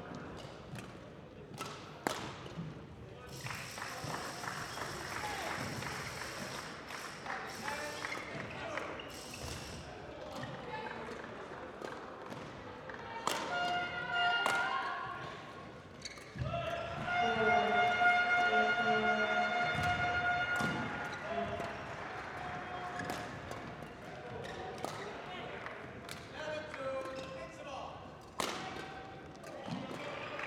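Badminton rally sounds echoing in a large sports hall: repeated sharp racket strikes on the shuttlecock and thuds of players' feet on the court. Voices carry across the hall, with a loudest stretch of sustained pitched sound a little past the middle.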